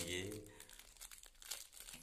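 Thin clear plastic wrapper of a small toy packet crinkling as it is handled and pulled open, a quiet scattered crackle, after a few words of speech right at the start.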